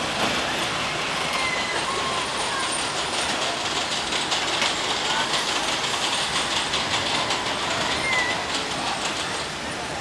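Steel roller coaster train running along its track: a steady rumble of wheels on the rails with rapid clattering through the middle seconds.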